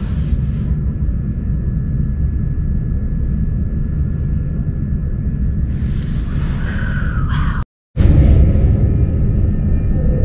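Steady low rumble and hum inside an electric passenger train's carriage, with faint steady whine tones above it. About six seconds in a hiss rises, with a tone that falls, and then the sound cuts out completely for a moment.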